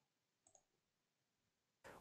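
Near silence, with two very faint clicks about half a second apart.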